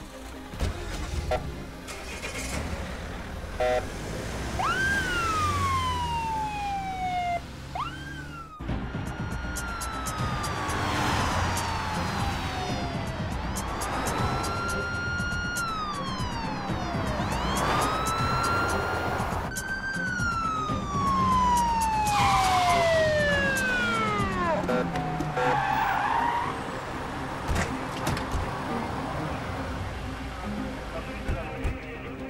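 Several police sirens wailing together, their pitch sweeping quickly up and then sliding slowly down, over and over; they begin about four seconds in. Background music and a low vehicle rumble run underneath.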